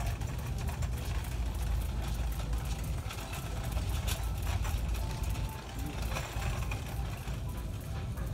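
Steady low rumble of a hand-held phone being carried along, with scattered light ticks of a borzoi's claws and footsteps on a hard shop floor.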